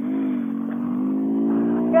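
Honda Grom's 125 cc single-cylinder engine pulling up a grass hill with two riders aboard, its note rising slowly as it works.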